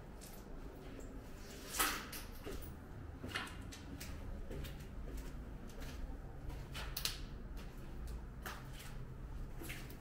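Footsteps on stairs: irregular knocks about every second or so, the loudest about two seconds in, over a low rumble of microphone handling.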